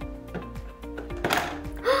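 Background music with steady held notes. About halfway through comes a short plastic clack as the toy playset's spring-loaded door pops open.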